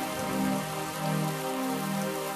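A rain sound effect, a steady hiss of falling rain, under sustained chords in the intro of a 1990s dance-pop song.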